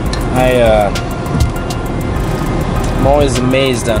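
A man's voice in two short bursts of speech over background music, with steady road-traffic noise behind.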